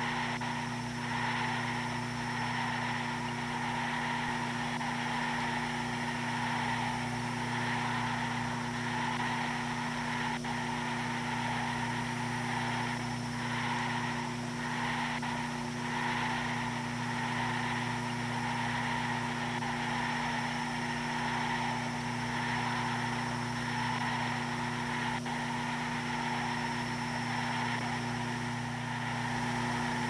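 A steady, unchanging mechanical drone: a constant low hum with fainter higher whirring bands, like an engine or motor running evenly.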